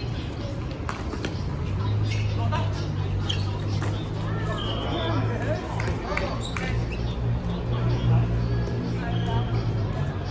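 Dodgeball being played on a hard outdoor court: sneakers squeak sharply now and then, balls strike with a few sharp knocks, and players call out, all over a steady low hum.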